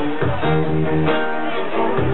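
Steel-string acoustic guitar being strummed, the chords changing every second or so.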